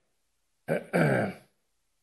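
A man's short throat-clearing grunt, under a second long and falling in pitch, about a second in.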